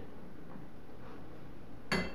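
A single sharp metallic clank near the end, with a brief ring: the perforated steel dipper, cut from a refrigerator compressor shell, being set down on metal. Before it, only a faint steady room hum.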